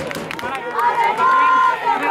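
A voice drawing out one word in a long, held call for about a second, near the middle.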